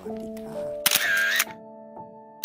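A camera-shutter sound effect about a second in: a sharp click and a short, bright whirring burst, over background music with held notes.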